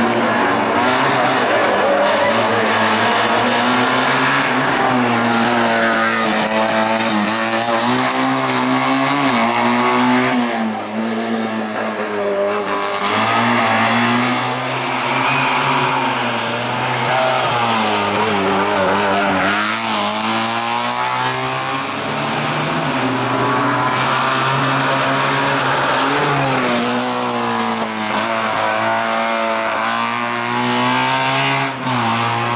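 Small race car's engine revving hard and dropping back again and again as the car accelerates and brakes between slalom cones, its pitch rising and falling many times.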